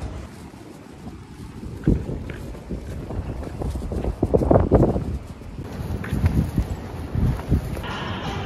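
Wind buffeting a handheld camera's microphone in irregular gusts, loudest about four to five seconds in.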